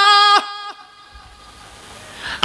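A man's amplified voice through a microphone and loudspeakers, holding one high, steady sung note at the end of a chanted sermon phrase. It cuts off a moment in, and a short echo trails away.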